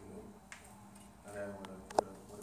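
A pause in a man's speech, with a brief bit of voice, then a single sharp click near the end that is the loudest sound.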